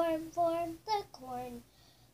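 A young girl singing unaccompanied: four short sung syllables, the last one lower in pitch, from a repetitive children's action song.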